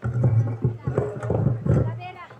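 A man's voice, loud and distorted with a heavy low hum, through a microphone on an overdriven PA, in short irregular phrases over acoustic guitar.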